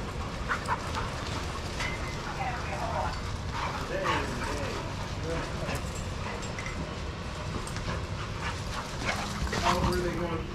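Dogs barking and yipping in play, a few scattered short barks over steady background noise.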